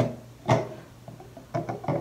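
A few light knocks and taps of small items being handled on a tabletop and in a gift box: one knock about half a second in, and a quick cluster of taps near the end.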